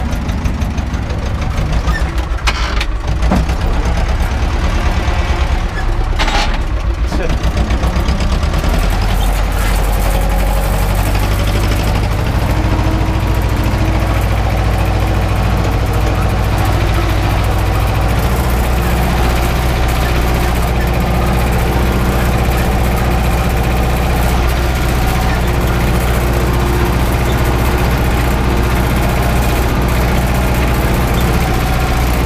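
Older farm tractor's diesel engine running steadily under load while it pulls a tine cultivator through tilled soil, heard from inside the cab. It settles into a heavier, deeper drone about eight seconds in, with two brief knocks in the first seven seconds.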